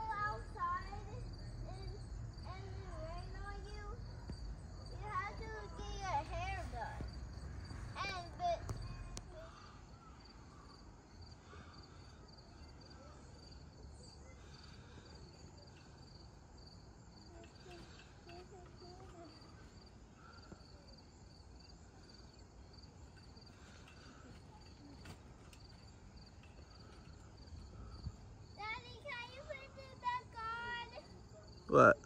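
Insects chirring steadily at a high pitch, with faint child voices in the first several seconds and again near the end. A low rumble runs underneath until about nine seconds in.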